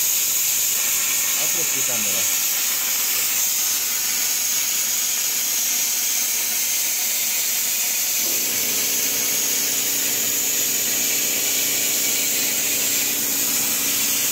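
Plasma cutter torch cutting through rain-wet sheet steel: a loud, steady hiss of the arc and air jet. A low steady hum joins in about eight seconds in.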